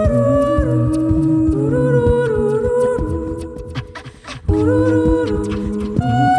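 Layered a cappella vocal loops from a Boss RC-202 loop station: several hummed harmony lines hold and step between notes over a steady percussive beat. The layers thin out about four seconds in, then the loop comes back in half a second later.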